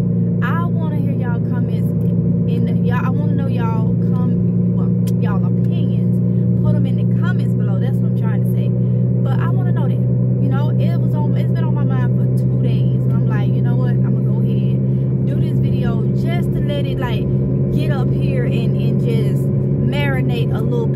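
Steady low hum of a car running, heard from inside the cabin, with a woman's voice talking over it.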